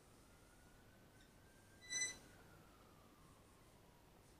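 Near-silent room with one short, high squeak about halfway through, from a marker pen dragging on the whiteboard. A very faint thin tone slowly falls in pitch underneath.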